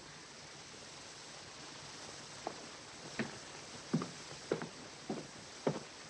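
Footsteps on a hard floor: a man walking at an even pace, the steps starting about two seconds in at a little under two a second, over a faint steady hiss.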